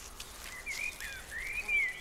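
Faint background birdsong: short chirps made of thin rising and falling whistles, about half a second in and again near the end, over a quiet outdoor hush.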